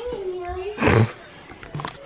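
A person's voice holds one drawn-out vocal note for most of a second, then lets out a short, loud, shout-like roar about a second in.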